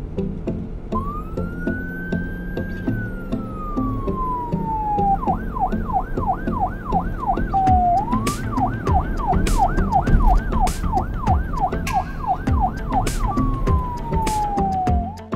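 Police siren sound effect over background music. About a second in, a wail rises and then falls slowly. Then come two runs of fast yelps, about three a second, with a short falling glide between them, and a slow falling wail near the end.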